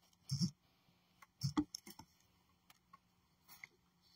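Faint, brief clicks and small knocks against quiet room tone, a few scattered in the first two seconds, typical of a phone being handled.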